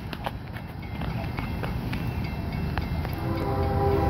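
An approaching diesel locomotive lead unit (a GE ES40DC), heard as a low rumble, with repeated sharp clicks over it. About three seconds in, the locomotive's air horn starts sounding a multi-note chord, and the whole sound grows louder.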